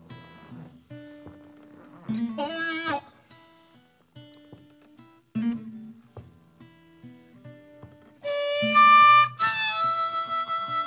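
Acoustic blues instrumental passage: sparse picked guitar notes, a short bent harmonica phrase about two and a half seconds in, then harmonica playing loudly over the guitar for the last two seconds.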